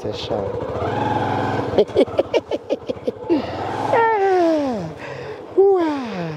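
Vocal sounds: quick rhythmic laughter-like pulses, then long calls that fall steeply in pitch, once about four seconds in and again near the end.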